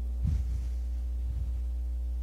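A steady low hum with faint higher tones over it, and a brief soft sound about a quarter second in.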